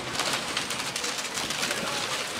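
Outdoor noise of wind and river water, with a bird calling.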